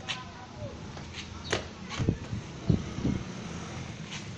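A football being juggled and bounced: several dull thumps of the ball against feet, body and concrete, mostly in the second half.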